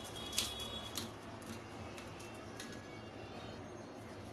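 Faint, occasional scrapes and light taps of a steel spoon spreading and pressing crumbly coconut barfi mixture into a steel plate, the clearest about half a second in, over low room noise.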